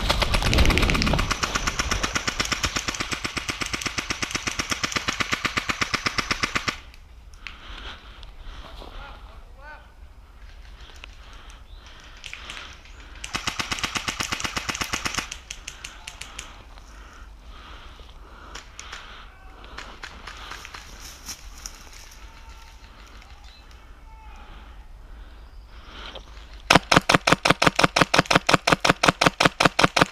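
Airsoft electric guns (AEGs) firing automatic bursts: a long run of rapid shots for about the first seven seconds, a shorter burst around the middle, and a loud, evenly spaced burst near the end.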